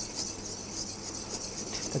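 Wire whisk stirring warm lemon cream in a stainless steel bowl, melting in the gelatin as the cream cools: a soft, steady scraping with no pauses.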